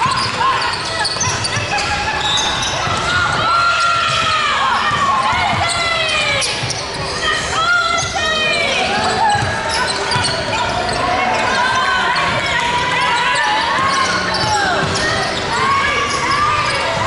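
Basketball game sounds on a hardwood court in a large, echoing gym: the ball bouncing as it is dribbled, many short squeals of sneakers on the floor, and players' voices calling out.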